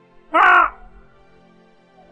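One short, loud cry about a third of a second in, over a faint steady background music drone.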